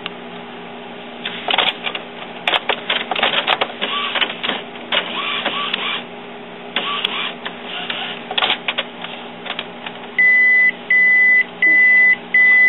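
Epson WorkForce inkjet printer clicking and whirring as it checks its ink cartridges after being powered back on. Near the end come four loud, evenly spaced beeps: the alert that goes with the printer's warning about non-genuine cartridges.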